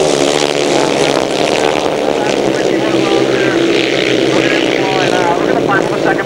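Grasstrack solo racing motorcycles, several single-cylinder engines running hard at racing speed and blending into one steady, loud drone.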